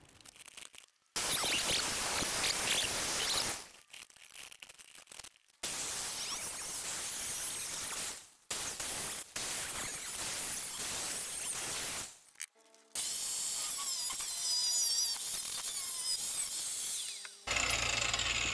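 Angle grinder cutting into rusted sheet steel of a car body panel, in four runs of a second or two to four seconds with short breaks between them; the last run carries a wavering high squeal.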